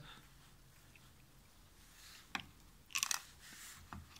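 Faint, hard clicks and a short crackling scrape of black plastic perfume-cap pieces being handled and fitted together on a pocket digital scale: one click a little after two seconds, a brief cluster about three seconds in, and another click near the end.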